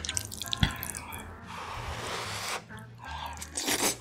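Close-miked wet eating sounds: mouth clicks and smacks, then a slurp of saucy black bean noodles lasting about a second near the middle, over soft background music.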